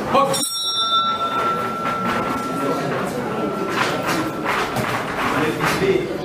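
Boxing ring bell struck once to start the round, ringing on and fading over a few seconds.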